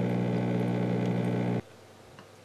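Steady machine hum with an unchanging pitch, which cuts off abruptly about one and a half seconds in.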